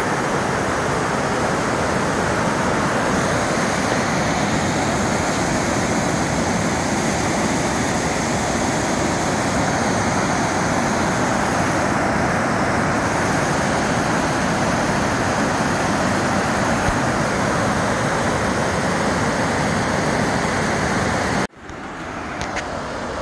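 Waterfall pouring over rock ledges: a steady, even rushing of water that cuts off suddenly near the end.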